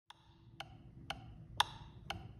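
Metronome ticking steadily at two clicks a second, counting in before the piano playing starts.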